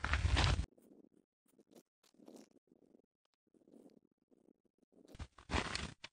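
A short burst of rumbling noise lasting well under a second, then near silence, with a few faint sounds returning near the end.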